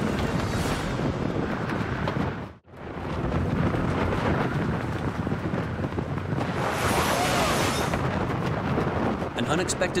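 Strong storm wind blowing against tents and across the microphone, a steady loud rush that swells higher about seven seconds in. It cuts out sharply for a moment about two and a half seconds in.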